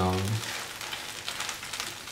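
Rice pasta and mushroom masala sizzling in a hot pan as it is sautéed, a steady hiss with fine crackles.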